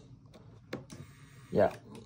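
Plastic adjustment switch on a BMW comfort seat clicking as it is pressed a few times. About a second in a faint whir starts as the seat motor begins raising the seat, a sign the seat module has woken up.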